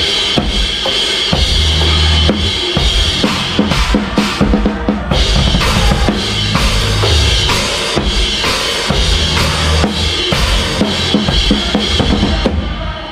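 Drum kit played hard in a live fast rock set: bass drum, snare and cymbals struck in quick succession, with the band's sustained low notes underneath.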